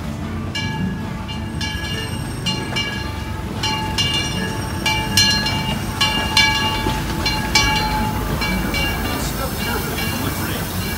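Disneyland Railroad steam train passing close by with a steady low rumble, while something rings with short, repeated strikes, about two a second.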